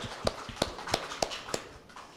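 Small audience clapping: a thin scatter of hand claps, about three a second, that dies away near the end.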